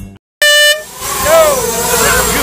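A short, loud air-horn blast about half a second in, held on one steady pitch for about a third of a second. It is followed by outdoor voices of people talking.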